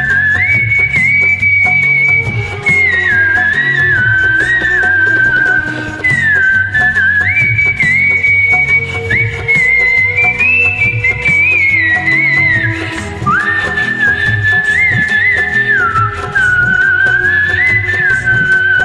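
Instrumental interlude of a karaoke backing track: a high, pure-toned whistled melody moving in steps and short glides over a bass line and steady beat.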